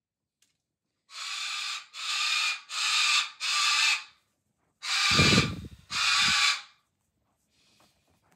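White cockatoo giving six harsh, screechy calls in a quick even series, each under a second long, with a low rumble under the last two.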